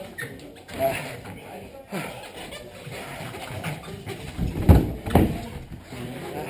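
Bodies scuffling on a foam mat, with two heavy thuds about half a second apart near the end as the grapplers go down onto it, over background voices in the gym.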